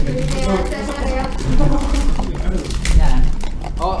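Men's voices talking and laughing.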